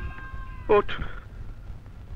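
A man's loud, drawn-out exclamation "Oh" about three-quarters of a second in, its pitch swooping upward in a whiny, cat-like way, over a faint held tone.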